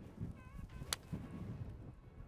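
Golf iron striking a teed-up ball: one sharp, short click about a second in.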